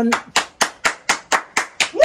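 Hands clapping in a steady rhythm, about four claps a second.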